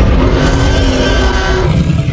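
Loud intro music sting with a dense sound effect over heavy bass, thinning out near the end.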